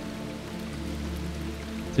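Quiet ambient background music with a low steady drone, mixed with the sound of a running stream.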